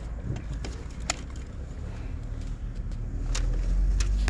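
Low rumble of a car heard from inside the cabin as it drives, growing louder toward the end, with two light clicks.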